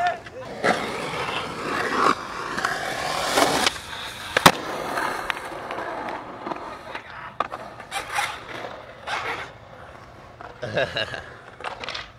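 Skateboard wheels rolling over rough concrete banks, with scattered clacks of the boards. There is one sharp, loud board clack about four and a half seconds in.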